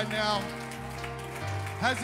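Church worship music: a held keyboard-and-bass chord that changes about one and a half seconds in, with the end of a sung vocal line at the start and singing starting again near the end.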